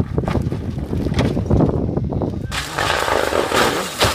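Rally car leaving the road at speed and crashing across rough ground among tree stumps: engine noise broken by knocks and thuds, then a broad rushing noise from about halfway in as the car tips onto its side.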